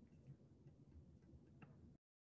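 Near silence: faint room tone with a few faint clicks, the clearest near the end.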